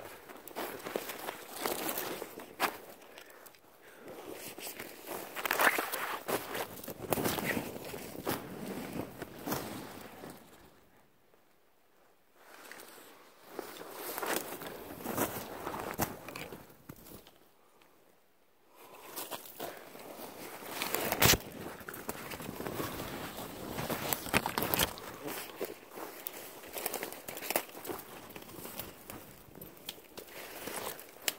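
Footsteps crunching through snow and brush, with twigs crackling and one sharp snap about twenty-one seconds in. The walking stops briefly twice, around eleven and seventeen seconds in.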